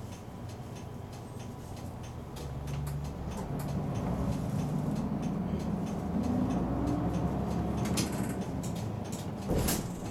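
City bus diesel engine heard from inside the front of the cabin, idling, then running harder and louder from about three seconds in as the bus pulls away in traffic. A single sharp knock sounds near the end.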